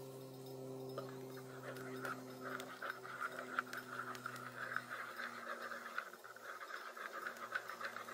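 Wooden spoon stirring a frothy drink in a small metal camping cup: a quick, continuous scraping rattle of the spoon against the cup that starts about a second in and keeps going.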